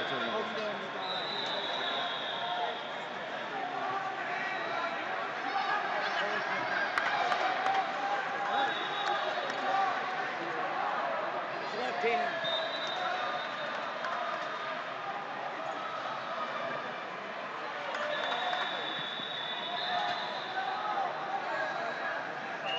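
Indistinct chatter of many voices in a large sports hall, with several high steady tones, each lasting a second or two, sounding over it.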